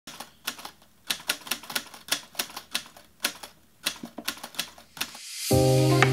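Rapid, uneven typewriter key clicks as a title sound effect, about five a second with brief pauses. Near the end a rising whoosh leads into music with a steady bass note.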